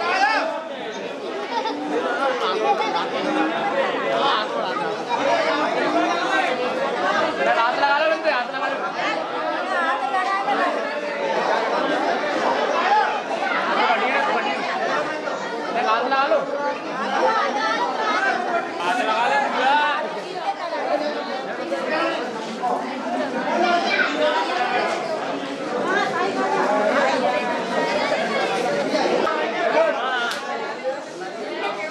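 A crowd of people talking over one another, a steady mix of overlapping voices with no single speaker standing out.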